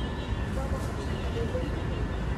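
Indistinct voices in the background over a steady low rumble, with a faint steady high-pitched hum.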